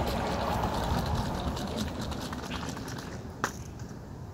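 Paint-tinted water sloshing inside a plastic spray bottle as it is shaken, dying away over about three seconds, with a single sharp click near the end.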